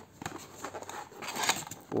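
Cardboard packaging being handled and opened: soft rustling and light scraping as a boxed inner tray slides out of its sleeve, with a brief louder rustle about a second and a half in.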